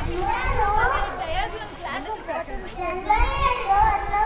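A young child speaking into a handheld microphone in a high voice, with a low rumble under it.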